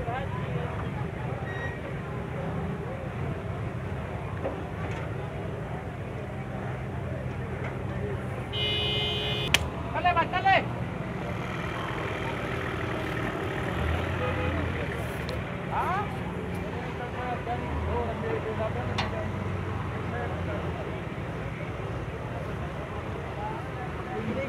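Livestock-market background of voices and vehicle engines running, with a vehicle horn sounding for about a second around nine seconds in, followed by a couple of loud shouts.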